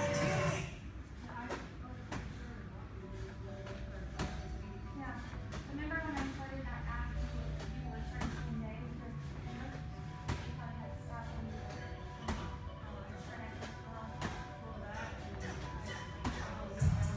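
Medicine ball thudding about once every two seconds during wall-ball reps, over music.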